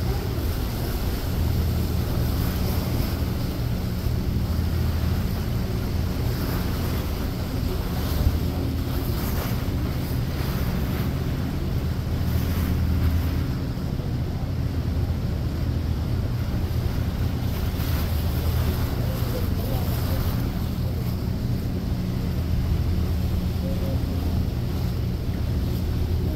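Steady low drone of a large catamaran ferry's engines under way, mixed with wind buffeting the microphone and the wash of choppy water. One brief knock about eight seconds in.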